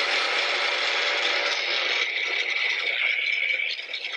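Small personal blender's motor running steadily with a constant high whine, blending a liquid mix of coconut oil and ginger–aloe vera juice; the sound thins a little about halfway through.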